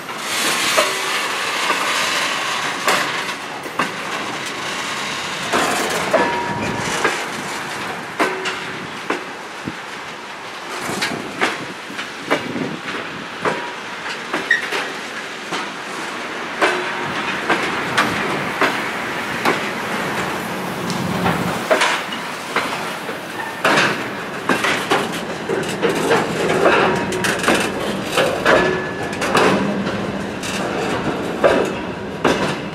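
Railway hopper wagons rolling slowly on jointed track: irregular clicks and clanks of wheels over rail joints and of couplings, with short, high wheel squeals now and then.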